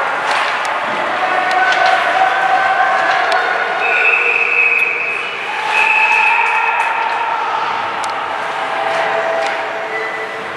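Ice hockey rink sound during youth play: spectators' voices shouting and calling in drawn-out cries, over scattered sharp clacks of sticks and puck on the ice and boards.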